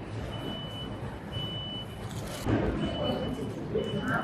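A high electronic beep repeating roughly once a second, with uneven lengths, over steady store background noise and faint voices.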